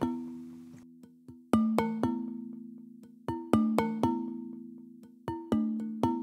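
Muletone Audio's Grand Glass Marimba, a sampled glass marimba, playing an ostinato pattern from its Motifs & Ostinatos patch: pairs of struck glass notes about every two seconds, each ringing on with a long, slowly fading decay.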